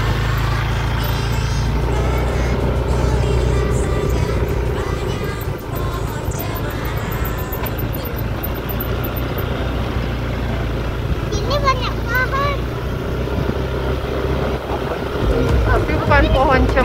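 Motorcycle engine running steadily while riding, a low drone under everything, with a short burst of voice about twelve seconds in.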